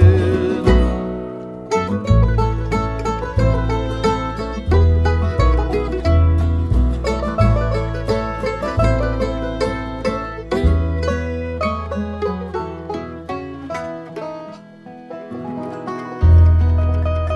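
Bluegrass band playing an instrumental break: fast picked banjo notes over acoustic strings and a walking bass. The playing thins out briefly near the end, then picks up again.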